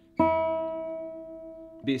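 Open high E (first) string of a guitar plucked once, ringing out and slowly fading. The note sits a few cents flat and is being tuned up toward E4.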